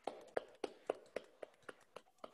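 A single person's hand claps, about eight evenly spaced claps at nearly four a second, growing fainter toward the end.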